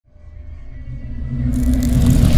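A low rumbling swell rising out of silence and growing steadily louder, with a hiss coming in about one and a half seconds in: a cinematic intro riser.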